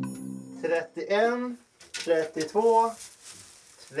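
Music fading out at the start, then a person's voice in a few short, separate utterances with pauses between them.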